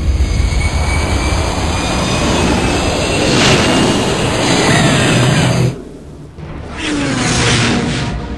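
Loud rushing engine noise of a sci-fi starfighter sound effect, with falling pitch sweeps like a ship passing by in the middle. It cuts off sharply about six seconds in, then a second, shorter burst follows.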